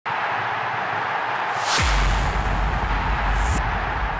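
Logo intro sting of hissing, crackly noise; a little under two seconds in a whoosh drops into a deep bass boom that holds, with a second short whoosh near the end.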